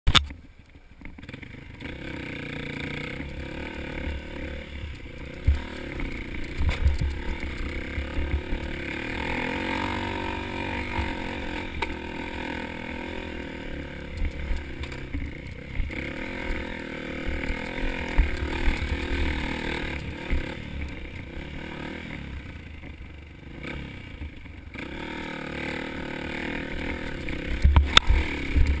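Honda CRF150F dirt bike's single-cylinder four-stroke engine running under load on a rocky climb, its note rising and falling with the throttle. Heavy wind buffeting on the helmet microphone and scattered knocks from the bike jolting over rocks.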